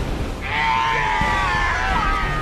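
A man's long, drawn-out shout that begins about half a second in and is held with a slight downward slide, over steady storm wind and sea noise.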